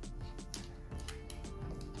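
Quiet background music, with a few faint clicks.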